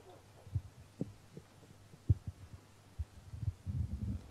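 Soft, low thumps and bumps at irregular intervals, about eight in four seconds, the loudest about two seconds in and a small cluster near the end, over quiet room tone in the press room.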